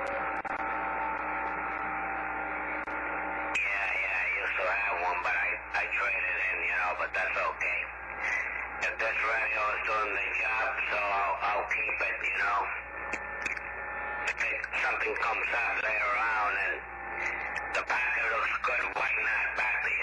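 A man's voice received over a CB radio on lower sideband, thin and cut off above and below like a radio speaker, over a background hiss; the S-meter shows a strong incoming signal. For the first three and a half seconds only a few steady tones and hiss come through, then the talking starts.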